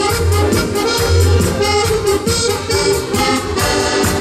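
Several accordions playing a tune together over a steady beat and bass.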